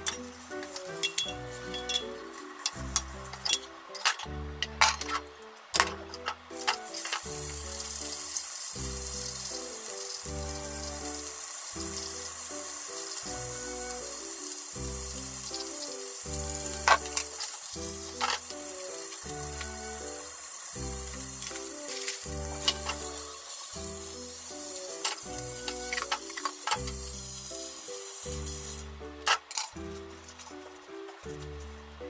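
Two small sausages sizzling in oil in a rectangular tamagoyaki pan, a steady hiss that starts about a quarter of the way in and cuts off shortly before the end. Light clicks of utensils come before it. Background music with a steady beat plays throughout.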